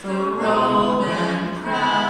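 A small group of voices singing together in multi-part harmony, a new sung phrase starting right at the beginning after a brief breath.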